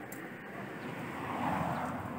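Engine noise of a passing vehicle, swelling to a peak about a second and a half in and then easing off.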